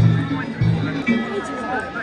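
Danjiri festival music: a deep taiko drum beating about three times a second, with crowd voices over it. The drumming drops away about a second in, leaving a held high note.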